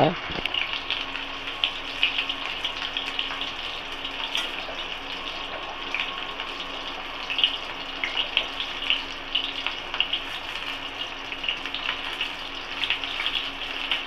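Stuffed bitter gourds frying in shallow oil in an aluminium wok: a steady sizzle flecked with small crackles and pops.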